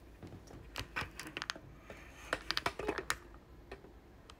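A smartphone being handled close to its own microphone: fingers tapping and knocking on the phone in a run of sharp clicks, thickest a little past halfway through.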